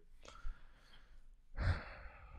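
A man's short sigh, breathed out near the microphone about one and a half seconds in, after a faint breath early on.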